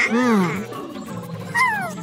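Cartoon soundtrack: background music with two short wordless character calls, the first rising and falling in pitch, the second a brief falling chirp near the end.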